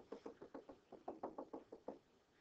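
A stylus tapping rapidly and faintly on a drawing surface, about seven taps a second, as a dashed line is drawn one dash at a time.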